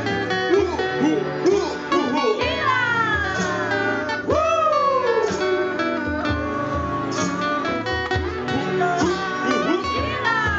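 A live band playing: strummed acoustic guitars, electric guitar, keyboard and conga-and-drum percussion over a steady beat, with voices singing and long sliding notes about three to five seconds in.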